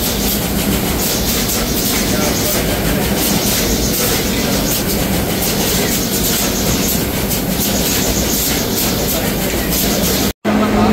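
Loud, steady din of food-processing machinery running in a factory hall, with a low hum under it.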